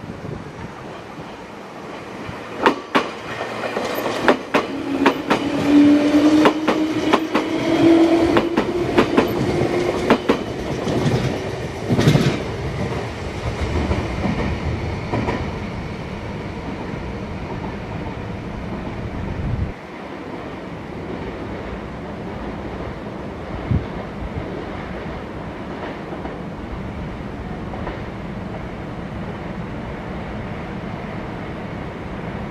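Electric train passing over rail joints: a run of clickety-clack wheel beats for about ten seconds with a low whine rising slowly beneath it, and one louder knock near the end of the run. After that a steadier rumble fades down.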